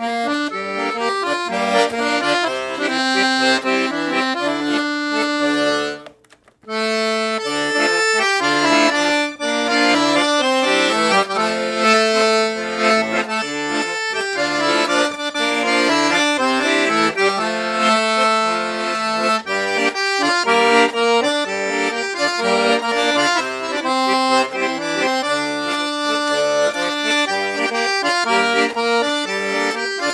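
Black Paolo Soprani piano accordion, 41 treble keys and 120 bass buttons with three treble reed sets (low, middle, high), playing a tune. The playing breaks off briefly about six seconds in, then carries on.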